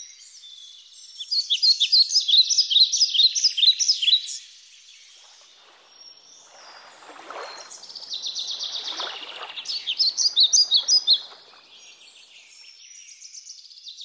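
Songbirds singing: two loud runs of fast repeated high chirping notes, about five a second, with softer calls between them.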